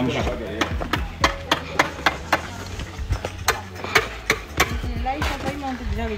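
Irregular sharp knocks and taps, a few a second, from masonry work on concrete blocks, with voices in the background.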